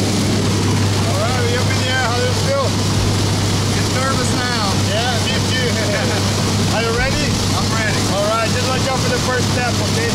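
Steady loud drone of a jump plane's engine and propeller, heard from inside the cabin, with a low hum that holds throughout.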